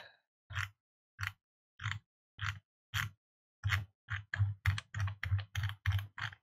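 Computer keyboard keys being pressed one at a time, about a dozen presses, slow at first and then quickening to about three a second in the second half.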